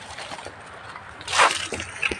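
Rustling of dry leaves and undergrowth underfoot and against the body as people walk through forest, with one louder crunching rustle about halfway through.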